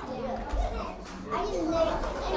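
Children playing and chattering, several young voices overlapping with no clear words.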